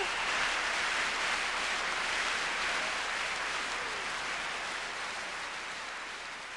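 Audience applause as a sung final note breaks off, an even clatter of clapping that fades gradually.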